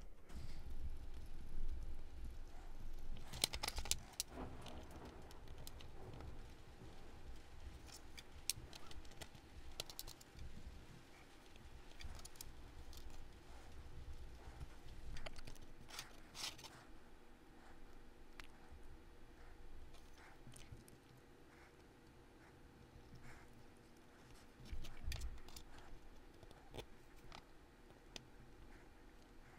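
Faint, scattered clicks and light handling noises of small metal parts of an HO-scale model streetcar motor being fitted together by hand, over a faint steady hum.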